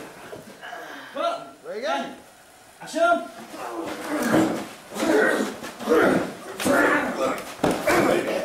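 Men's wordless grunts, strained cries and shouts while grappling in a fight scene, coming in short loud bursts about once a second in the second half.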